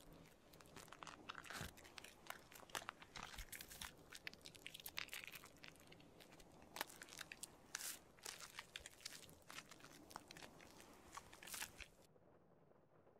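Shaving brush working foamy shaving cream into a beard, close up and quiet: a dense run of small crackles with louder pops scattered through, stopping suddenly at the end.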